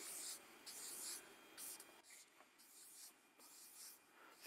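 Marker pen drawing on flip-chart paper: a faint series of short, hissing strokes as a row of circles and a cross is drawn.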